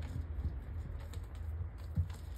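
A hand pressing and smoothing a sheet of puff pastry onto another on the work surface: a few faint soft taps and rubbing over a low steady hum.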